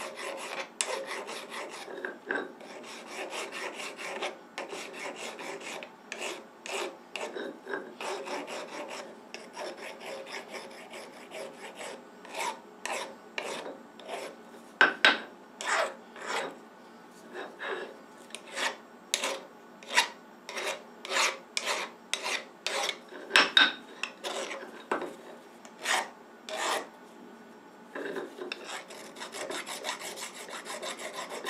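Flat hand file scraping across the sharp edges of a freshly milled metal block held in a vise: a series of short rasping strokes, about two a second through the middle, the loudest about halfway and two-thirds of the way through.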